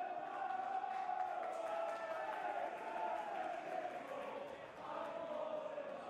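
Football supporters chanting together in the stands: a long, drawn-out sung chant that slowly rises and falls in pitch, heard faintly from a distance.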